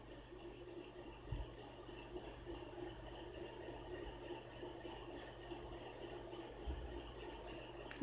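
Faint steady high-pitched trill, like a cricket's, over a low hum, with two soft knocks.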